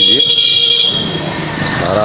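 A vehicle horn sounding one long, high-pitched toot that cuts off about a second in, over street traffic.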